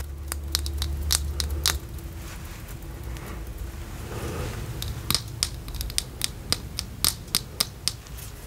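Close-miked crackling clicks and scratches from a makeup brush and a mascara spoolie worked near the microphone. They come sparsely at first and about three or four a second in the last few seconds. A low hum stops about two seconds in.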